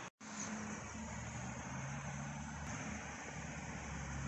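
Outdoor background noise with a steady low engine hum that sets in about a second in, after a brief dropout at the very start.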